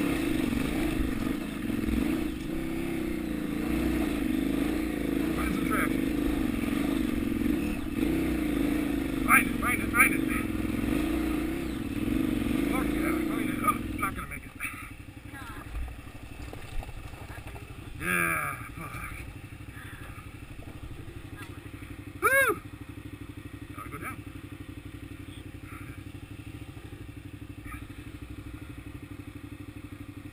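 KTM 990 Adventure V-twin engine pulling hard in low gear up a steep rocky climb, its pitch rising and falling with the throttle, with a few sharp knocks from the rocks about nine to ten seconds in. About fourteen seconds in the engine drops off suddenly to much quieter steady running as the bike crests the hill.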